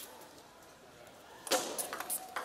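Quiet hall for about a second and a half, then a sudden sharp knock and the quick clicks of a table tennis ball struck by bats and bouncing on the table as a rally starts.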